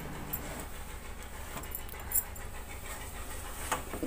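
Cloth wiping dust off a plastic set-top box: soft, steady rubbing with a few faint clicks.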